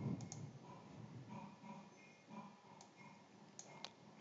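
A few faint computer mouse clicks over quiet room tone, with a soft low bump at the very start.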